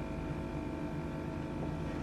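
Steady background hum with faint steady tones, and no distinct sound over it.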